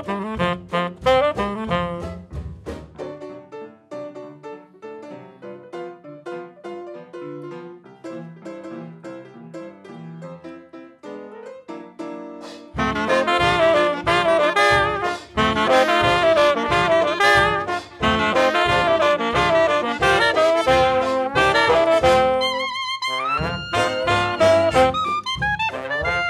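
A 1920s-style hot jazz band of trumpets, trombone, saxophones, clarinet, banjo, piano, string bass and drums playing an arranged number. A few seconds in the band drops away to a quieter piano passage, and about halfway through the full ensemble comes back in loud. Near the end the band breaks off briefly and returns on held notes that slide upward.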